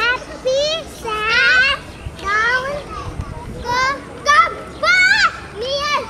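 Young children's voices calling out in short, high-pitched shouts, about seven in six seconds, over a steady background of children's chatter.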